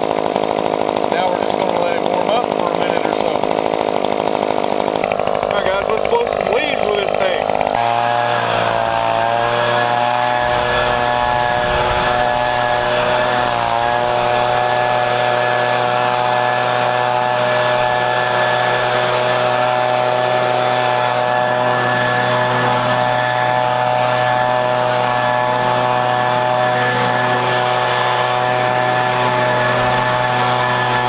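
Echo PB-2520 two-stroke handheld leaf blower running just after a cold start. Its engine note is unsettled for the first several seconds, then from about eight seconds in it holds a steady, high-pitched drone at high throttle, with a brief dip in pitch a few seconds later.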